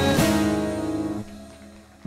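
A closing strummed chord on a saz (long-necked lute) rings out and fades away over the first second or so, ending the song.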